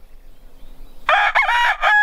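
Paduan rooster crowing, starting about halfway through: a broken opening phrase that goes into a long held note.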